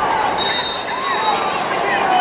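Spectators' voices yelling and shouting in a large, echoing arena, with a steady high tone lasting about a second shortly after the start.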